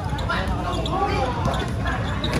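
Spectators talking close by during a basketball game, with a basketball bouncing on the outdoor court.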